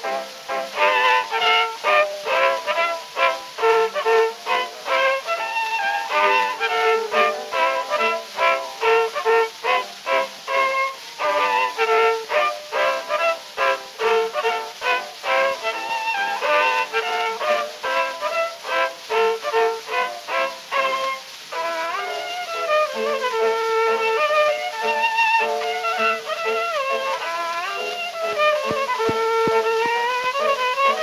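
Solo violin playing a Polish national dance on an early acoustic recording from 1900. Quick, short detached notes for about the first twenty seconds, then longer held notes with vibrato.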